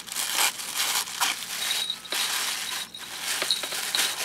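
Soft white wrapping paper rustling and crinkling in a run of short bursts with brief pauses, as hands pull off the tape and unfold it by hand.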